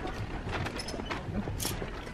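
Footsteps and light clicks and rustles of someone walking through a clothing store, over steady shop background noise, with a brief hiss about one and a half seconds in.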